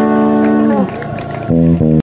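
A live band of electric guitar, bass guitar, keyboard and drums playing. One note is held for about a second and sags slightly in pitch as it ends, then two short, clipped notes come near the end.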